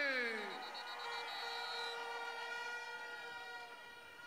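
A man's voice over a rally's loudspeakers trailing off into echo at the end of a phrase, leaving several steady ringing tones from the sound system that slowly fade away.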